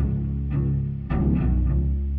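Heavy rock music with no vocals: a bass guitar holds low, sustained notes while drums strike a few sparse hits about half a second apart.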